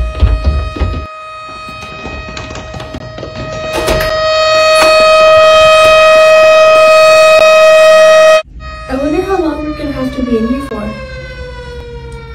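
Air-raid siren: one steady wailing tone that swells louder and cuts off suddenly about eight seconds in, followed by a siren tone falling slowly in pitch under children's voices.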